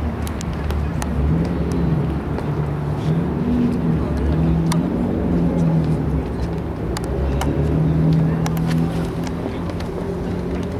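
Road traffic running past as a steady low rumble, with a few faint clicks scattered through it.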